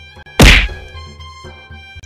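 A single sharp whack about half a second in, the loudest thing here, dying away quickly, over faint background music.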